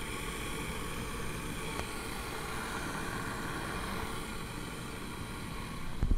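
Bear electric egg cooker with its water boiling on the stainless steel heating plate to steam the eggs: a steady boiling, steaming noise, picked up close by a microphone set against the cooker's base.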